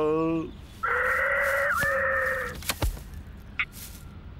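A cartoon magpie's long, harsh squawk of nearly two seconds, followed by a single short thud.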